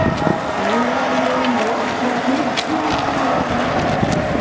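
Busy outdoor crowd ambience of many people walking along a road, with a steady low rumble. A wavering low tone runs from about a second in to near the end.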